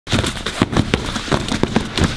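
Boxing gloves smacking against a grounded defender's guarding arms and legs in a quick, uneven string of hits, about six a second.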